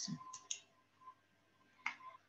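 Computer mouse clicked once, sharply, near the end, advancing the lecture slide, with a couple of fainter short clicks about half a second in.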